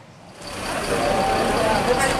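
Engine noise of large buses running close by, coming in about half a second in, with voices of people in a crowd talking over it.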